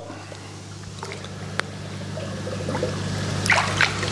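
Aerated koi pond water splashing and trickling, growing louder toward the end as a cuvette is dipped in, over a steady low hum. A single click comes about one and a half seconds in.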